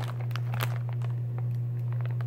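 Plastic candy pouch crinkling as it is handled, with scattered small clicks and rustles, over a steady low hum.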